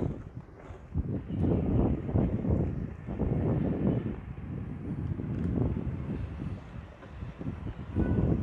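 Wind rumbling unevenly on the microphone of a camera carried on a moving electric bike, with low road noise underneath.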